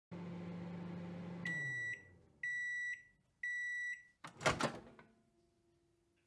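Microwave oven running with a low hum that winds down as it stops, followed by three beeps signalling the end of the cooking time, then a clunk of the door latch as it is opened.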